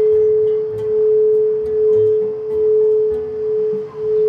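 Large frosted quartz crystal singing bowl rimmed with a mallet, sounding one steady pure tone that swells and dips about once a second.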